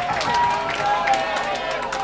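Concert audience between songs: many voices shouting and calling out at once over scattered hand claps.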